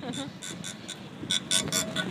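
Chairlift chair passing over the sheave wheels at a lift tower: quick metallic clicks about five a second, louder in the second half.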